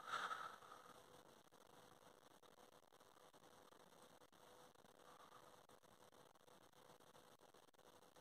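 Near silence: faint in-car room tone with a faint steady hum, after one brief soft sound right at the start.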